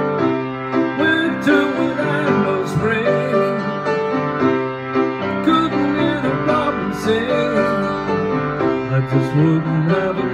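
Piano playing an instrumental passage of chords and melody at a steady, moderate loudness.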